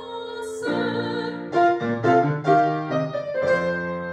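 Grand piano playing the closing postlude of a Baroque aria alone, a series of detached chords. The soprano's last sung note ends at the very start.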